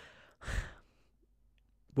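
A man's breathy sigh into a close desk microphone, about half a second in.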